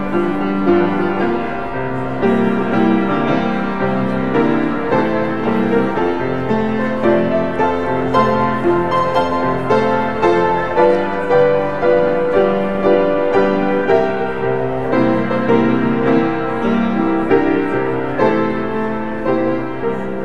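Grand piano playing a steady, flowing piece of held chords and melody notes.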